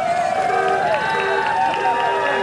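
A crowd of people cheering and shouting together, many voices overlapping, with music under it.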